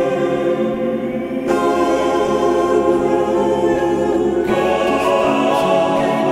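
Song passage carried by a wordless choir singing held chords over the band. The sound grows fuller and brighter about a second and a half in, and again at about four and a half seconds.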